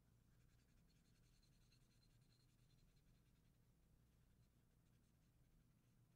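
Very faint scratching of a felt-tip marker coloring on paper in quick repeated strokes, over a low steady hum.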